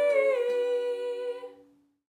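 Two female voices holding the song's final note in harmony, the pitch stepping down slightly about half a second in, then fading out to silence near the end.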